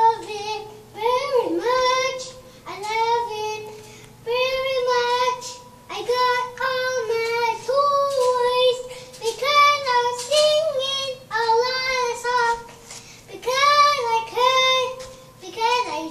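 A young boy singing a song, in short phrases of a second or two with brief pauses between them.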